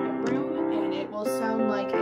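Music playing through a pair of small SoundLogic XT portable Bluetooth speakers, pretty loud, with the chords changing every half second or so.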